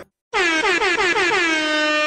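Horn sound effect: a loud blaring horn note that slides down in pitch over about a second, then holds steady.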